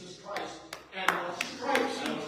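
Hand claps in a steady rhythm, about three a second, starting about a third of a second in, over a man's voice.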